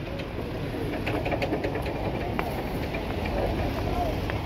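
Busy street noise: a steady rumble of traffic and crowd, with a few faint scattered clicks and rattles.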